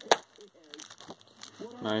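A single sharp snap of plastic packaging being handled, just after the start.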